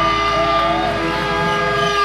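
Electric guitars and amplifiers ringing out as a steady held drone of several tones over a low amp hum, with no drumbeat.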